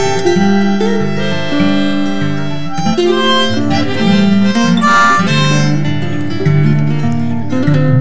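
Instrumental break of a folk-style song: a harmonica plays held notes and chords over strummed acoustic guitar.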